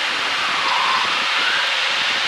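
Steady rushing noise of an L-39 jet trainer's jet engine and airflow heard inside the cockpit during a hard turn of about four G, with a faint whine that rises slightly in pitch about a second in.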